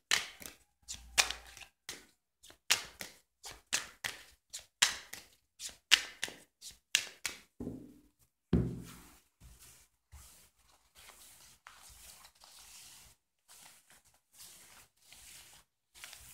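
A deck of tarot cards being shuffled by hand: a string of sharp slaps and snaps of the cards for about the first eight seconds, then softer sliding and rustling as the cards are mixed over a cloth.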